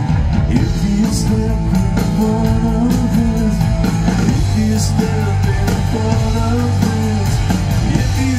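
Rock band playing live through a concert PA: electric guitar, bass guitar and drum kit with a male lead vocal, heard from the audience in a large hall. Steady beat with a couple of cymbal crashes.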